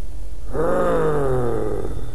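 A man's low moan, starting about half a second in and lasting just over a second, its pitch sliding downward as it fades.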